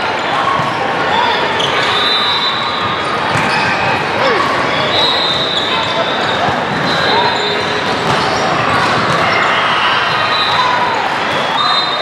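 Volleyball rally in a large gym: a steady din of players' calls and spectators' voices, with sharp hits of hands and forearms on the ball.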